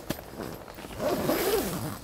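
Zip on a carp bivvy's door being pulled in one long rasping run that starts about a second in.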